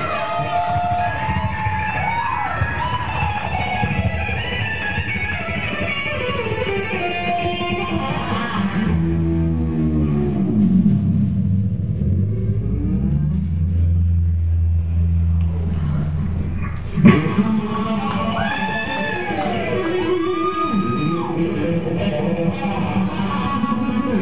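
Electric guitar played loud through an amplifier as an unaccompanied rock solo: fast runs, then a long low note with pitch dives falling away about nine seconds in. A sharp hit comes about seventeen seconds in, followed by swooping bent notes that rise and fall.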